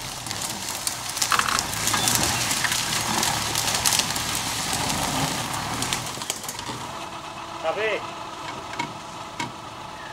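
Suzuki Sierra 4x4 engine running low as it crawls up a slippery bush track, with crackling and scraping of twigs, leaf litter and long grass under the tyres and against the body. The crackling is loudest in the first six seconds or so, then dies down while the engine keeps running.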